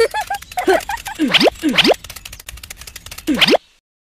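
Cartoon sound effects: a fast clicking rattle under three boing-like swoops that dip in pitch and spring back up, with a few short squeaky chirps near the start. It all cuts off suddenly shortly before the end.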